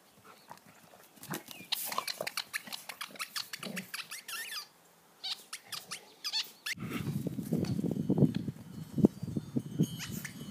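A dog's rubber squeaky toy squeaking over and over as the dog bites it: quick clusters of short, wavering squeaks. A low scuffling rumble joins about seven seconds in.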